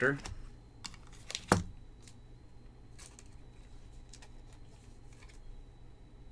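Glossy chrome trading cards being handled and flipped in the hands, giving a few light, irregular clicks and flicks of card stock, the sharpest about a second and a half in.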